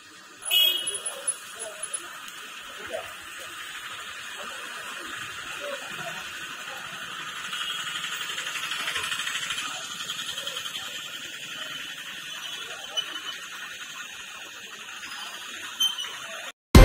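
Faint, indistinct voices over a steady high hiss that swells in the middle, with a short, sharp beep about half a second in.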